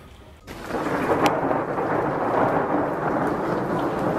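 Heavy rainstorm: a dense, steady downpour that starts suddenly about half a second in, with one sharp crack just over a second in.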